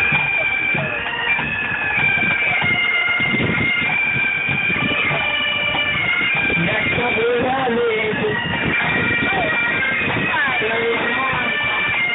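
A marching pipe band playing: several bagpipes sounding a tune over their steady drones, with drums beating beneath.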